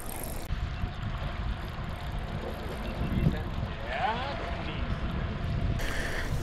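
Wind buffeting the microphone in a steady, fluctuating rumble, with a faint voice about four seconds in.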